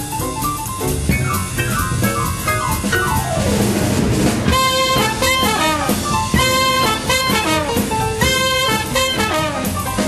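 Small swing-jazz band playing live: piano with string bass and drums at first, then clarinet, trumpet and trombone come in together about halfway through, playing loud held ensemble notes over the drums.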